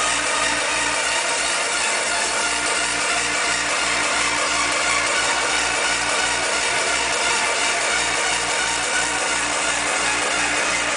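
Hardcore gabber dance music played loud over a club sound system, driven by a fast, steady, distorted kick drum several beats a second.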